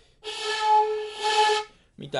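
Shinobue (Japanese bamboo transverse flute) sounding one low, breathy note with all finger holes closed, the tsutsune. The note is held for about a second and a half, with heavy air noise around the tone.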